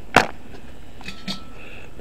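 A single sharp knock, then a couple of fainter clicks, as a gloved hand handles the cut-open steel propane tank shell.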